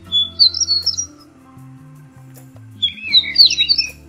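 A songbird sings two short, intricate whistled phrases, each about a second long, one at the start and one near the end, over soft background music.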